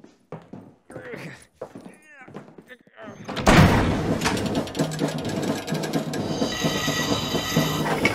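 Animated-film sound effects: a few short knocks and sounds like muffled voices, then about three and a half seconds in a loud, dense clatter of workshop machinery starts and keeps going. A high ringing tone joins it near the end.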